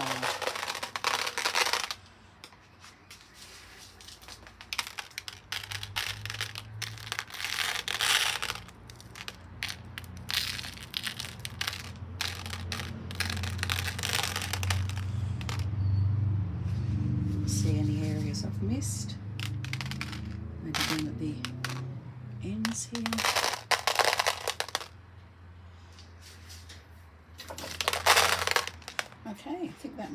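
Crushed mirror glass and glass crystals being scattered by hand onto a resin-coated canvas: intermittent bursts of rustling and small hard pieces landing, with crinkling from their container, over a low hum.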